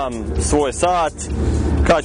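A car engine running close by, a low rumble that swells in the second half under a man's talk.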